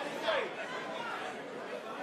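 Steady murmur of crowd chatter in a large hall, with a faint voice in the first half-second.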